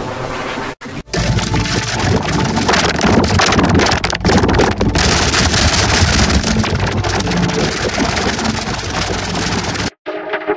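Heavily distorted, noise-like audio from a logo-effects edit, loud throughout, with a brief dropout about a second in and an abrupt cut at the end.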